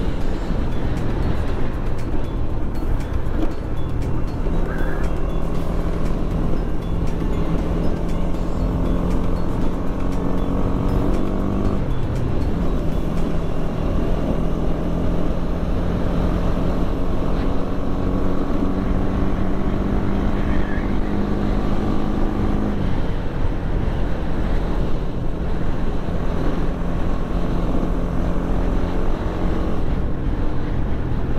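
Honda Winner X 150's single-cylinder four-stroke engine running under way, its pitch climbing slowly as the bike gathers speed. The pitch drops sharply twice, about twelve and twenty-three seconds in, as the rider changes up a gear, then holds steady.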